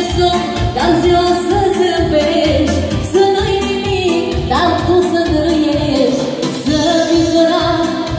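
Live Romanian folk (etno) dance music: a woman sings into a microphone over a band with keyboard and saxophone, with a steady, fast beat.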